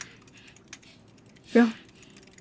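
Computer keyboard being typed on in quick, irregular key clicks, faint in the background. A woman's voice says a single word near the end.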